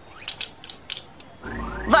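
Animated-series sound effects: a run of irregular mechanical clicks, then, about one and a half seconds in, a low rumble with a rising whoosh as a racing craft's engine comes in.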